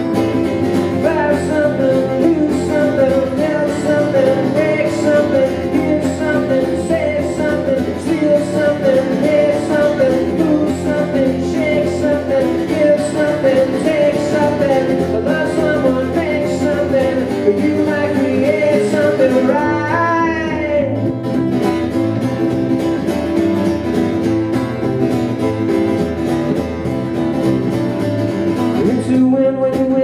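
Live acoustic guitar strummed together with a plucked double bass, playing an instrumental passage of a folk-rock song.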